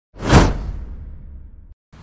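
A whoosh sound effect: a quick swish that swells and peaks a moment in, then a low rumble that fades away over about a second and cuts off.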